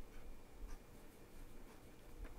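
Faint room noise with a low hum and a few soft ticks.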